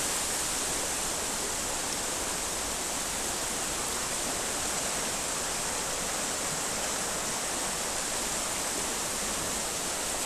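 Swollen, muddy river in flood rushing through its channel: a steady, even rush of fast water.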